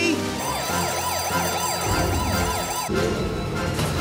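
Electronic siren sounding in fast rising-and-falling sweeps, about three a second, stopping about three seconds in. Dramatic music with a low beat comes in under it and carries on after the siren stops.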